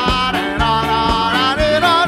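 Live band music with a male lead singer's voice over drums and bass guitar, the drums marking a steady beat of about two hits a second.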